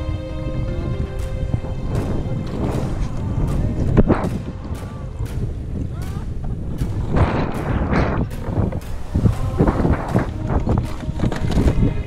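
Wind buffeting the camera microphone out on choppy sea, a steady low rumble, with water slapping and splashing against a kayak in short hits and a louder splashy stretch a little past the middle.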